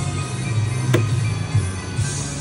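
Electronic slot machine playing its reel-spin music and sound effects over a steady low hum, with one sharp click about a second in.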